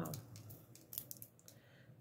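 Gold rhinestone banding shaken over paper: faint, quick metallic clicks and light rattling as loose little metal rings drop out of it, dying away after about a second and a half.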